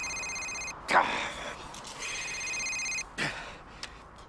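Mobile phone ringtone: an electronic ringing in two bursts of about a second each, with a pause between. A brief vocal sound comes just after the first burst.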